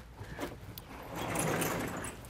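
Chalk scratching across a blackboard in a stretch of writing that swells and fades in the second half, after a couple of faint ticks about half a second in.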